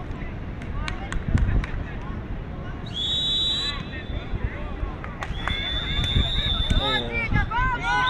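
Referee's whistle in a beach handball match, blown twice: a short blast about three seconds in, then a longer held blast about two seconds later.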